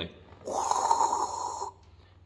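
A man making a spraying sound with his mouth to imitate a handheld bidet sprayer, or bum gun: one breathy 'pssh' lasting a little over a second.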